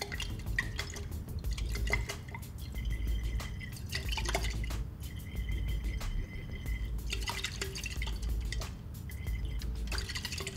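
Liquid swirling and dripping in a glass conical flask with many small clicks, as sodium thiosulfate solution is run in from a burette. This is the titration step before the yellow iodine solution turns pale straw yellow.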